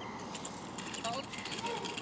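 Faint distant voices over outdoor ambience, with a run of light, rapid clicks in the second half.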